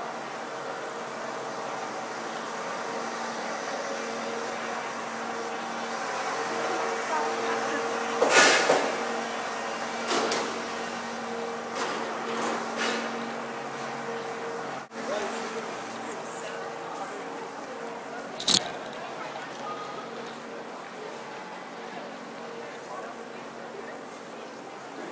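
City street ambience: a vehicle's steady engine hum that fades out a little past halfway, passers-by talking, and a couple of sharp bangs, the loudest about a third of the way in and another about three-quarters in.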